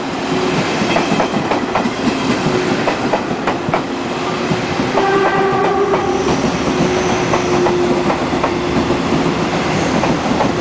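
Coaches of an E1000 push-pull Tze-Chiang express rolling past, its wheels clicking over rail joints in a steady rumble as the train slows to stop. About five seconds in, a pitched tone sounds for about a second, followed by a faint high whine.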